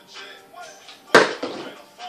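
A plastic water bottle is flipped and hits the wooden tabletop with one sharp thud a little over a second in, then tips over onto its side with a smaller knock.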